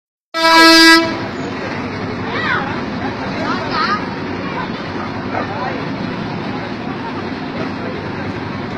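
A vehicle horn sounds once near the start: a single short, steady honk, the loudest thing here. After it comes the steady din of a busy street market, with traffic and people talking in the background.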